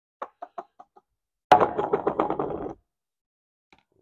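A brush knocking against a pan as it is worked through thinned, pudding-like filler paste: a few light taps, then about a second of rapid clattering taps.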